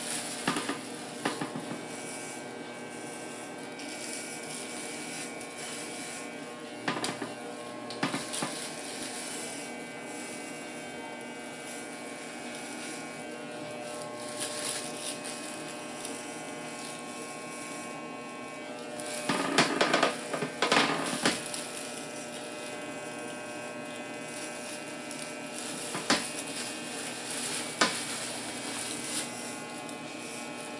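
Corded electric hair clipper running steadily with no guard attached, buzzing while it shaves the sides of a toddler's head. Several brief knocks break through, the loudest cluster about two-thirds of the way through.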